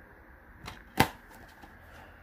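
Plastic DVD case being handled: a small click, then a sharp plastic click about a second in.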